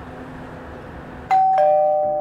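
Hand fretsaw rasping steadily as it cuts shell for mother-of-pearl inlay. A little over a second in, a loud two-note ding-dong chime, high then lower, cuts in and rings on.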